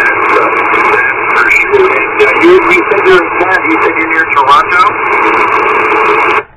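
Single-sideband receiver audio from a Yaesu FT-710 on the 40-meter band. A steady hiss of band noise is squeezed into a narrow telephone-like band, crackling with static. A weak, garbled voice from the distant station comes and goes through it.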